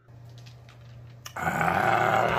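A man's low, rough growling vocal sound, starting about a second and a half in and carrying through the end, after a quieter stretch with a faint steady hum.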